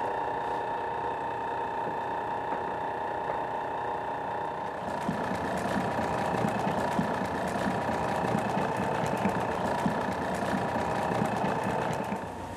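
Large commercial stand mixer running steadily with its paddle beating torrone nougat; about five seconds in, a dense clatter of almonds in the steel bowl joins the motor hum.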